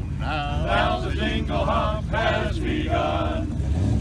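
Men's a cappella chorus singing in close harmony, with a short break in the voices near the end.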